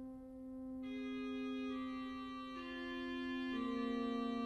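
Digital organ playing slow, sustained notes: a held low note, joined about a second in by a second, brighter voice that moves in long notes about once a second.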